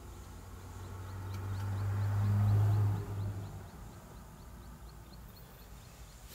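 Speedboat running fast over choppy sea, with the rush of water and spray along the hull. A low drone swells over about two seconds and drops away suddenly about three seconds in.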